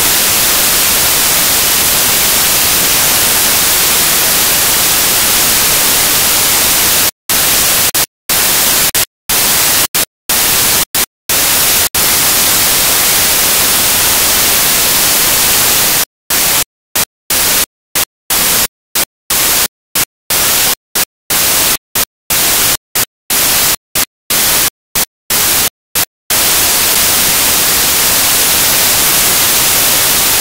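Loud, steady static hiss, brightest in the treble, broken by abrupt dead-silent dropouts: about one a second for a few seconds starting about seven seconds in, then a faster run of about two a second for some ten seconds before the hiss carries on unbroken.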